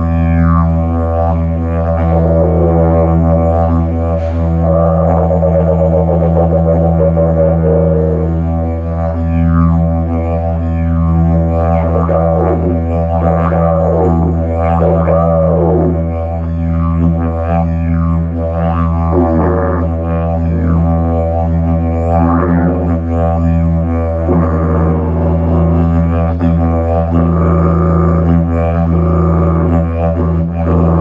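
Hemp didgeridoo droning on a low E without a break. Over the drone, sweeping overtones rise and fall repeatedly, shaped by the player's mouth and tongue into a rhythmic beat.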